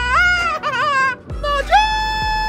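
A woman singing loudly in a high, wavering, wailing voice. She sings in short bending phrases with brief breaks, then starts a long held note near the end.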